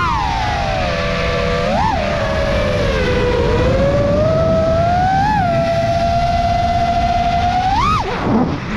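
Five-inch FPV freestyle quad's XING-E Pro 2207 2750 KV motors on tri-blade 4934 S-Bang props whining, the pitch following the throttle: high at first, sinking over the first few seconds, then climbing back to a steady pitch. Short throttle punches give quick upward blips about two seconds in, after five seconds and near the end, over a rumble of wind on the onboard camera.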